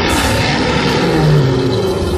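A lion's roar, loud and rough, starting suddenly and held for about two seconds.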